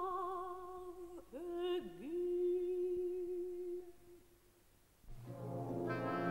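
An operatic female voice sings long held notes with vibrato, sliding down and back up about two seconds in, then fading away. Near the end a full orchestra with brass comes in.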